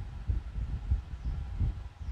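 A low, uneven rumble with no clear rhythm or pitch.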